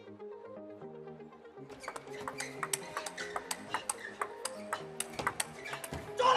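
Background music, and from about two seconds in, a fast table tennis rally: the plastic ball clicking sharply off the bats and the table, several strikes a second.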